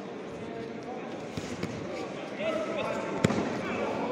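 Gloved strikes landing on protective gear during a full-contact bout, dull thuds with one sharp smack a little past three seconds in, over the chatter of voices echoing in a large hall.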